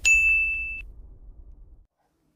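Logo-intro sound effect: a single sharp ding that holds one high ringing tone for under a second and then cuts off, over a low rumble that fades away to silence.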